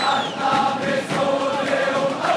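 Large crowd of football supporters singing a chant together, many voices holding the sung notes over the general noise of the stands.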